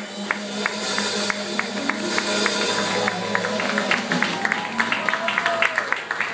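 A jazz band's closing notes with upright bass fading out, as scattered hand claps from a small audience begin and grow into denser applause in the second half.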